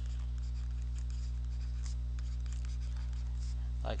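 Faint scratchy pen strokes as a word is handwritten on a drawing tablet, over a steady low electrical hum.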